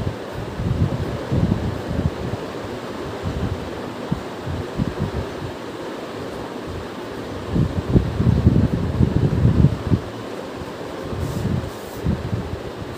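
Steady background hiss with irregular low rumbling bumps, the heaviest cluster about three-quarters of the way through.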